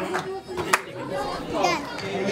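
Young children's voices and chatter in a large hall, with one child's high voice rising and falling near the end and a sharp click a little under a second in.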